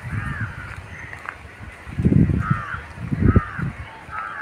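Crows cawing, several short calls spread through the moment. Two loud, low, muffled rumbles on the microphone, one about halfway and one near the end, are the loudest sounds.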